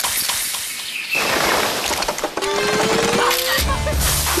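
Aluminium beer can pulled open with a sudden crack, then a dense hiss of spraying fizz that thins out over the next couple of seconds. A single rising tone follows, and music comes in near the end.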